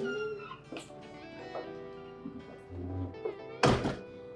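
Background film music with steady sustained notes, then a loud door slam near the end.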